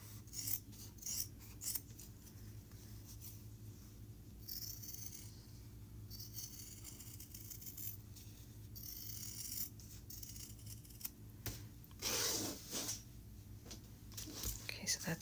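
Fabric scissors cutting through a folded stack of four layers of interfaced fabric. There are a few sharp snips in the first couple of seconds, then slower rasping cuts and fabric rubbing over a faint steady hum.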